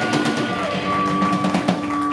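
Live rock band playing: electric guitar holding long notes that slide down in pitch, over a drum kit beat.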